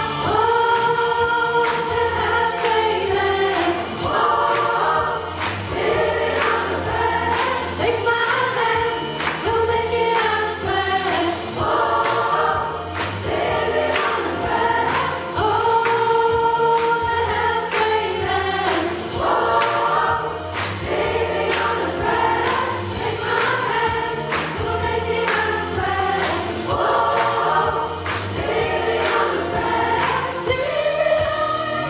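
Large amateur rock choir, mostly women's voices, singing a pop-rock song in parts in held, sustained phrases, with a bass line and a steady beat underneath.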